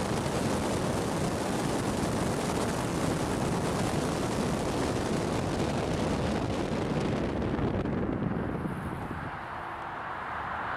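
Steady rushing road and wind noise of a car driving, with no music yet; the high hiss dulls from about seven seconds in.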